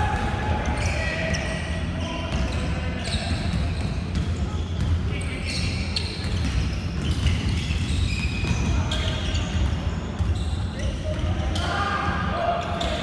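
Basketball bouncing on a hardwood gym floor amid running feet, with players calling out indistinctly, all echoing in a large sports hall.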